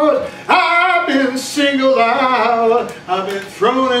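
A man singing into a microphone in long, wavering held notes, with short breaks about a third of a second in and again near three seconds.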